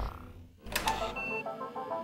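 The music drops away, and then an old computer makes a run of clicks and short electronic tones that step from one pitch to another.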